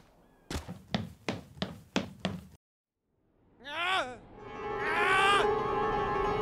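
A run of six dull thuds, about three a second, then a pause and two voice-like calls that fall in pitch as music comes in near the end.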